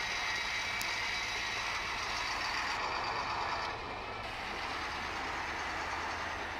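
Heavy 8x8 military truck carrying a multiple rocket launcher, its engine running steadily as it moves slowly. The sound dips slightly a little before halfway through.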